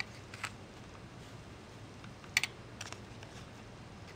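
A few sharp, light clicks of a small metal scoop knocking against a plastic tub while gold embossing powder is scooped up; the loudest click comes a little past halfway.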